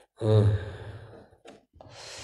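A man's voiced sigh that falls in pitch and fades, followed near the end by a soft breath drawn in.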